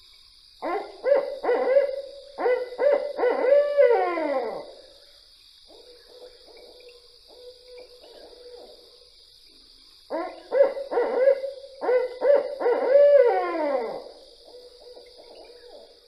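Barred owl giving its 'who cooks for you, who cooks for you all' call twice. Each phrase is a run of hoots ending in a long, drooping final note, with fainter hooting in the gap between the two.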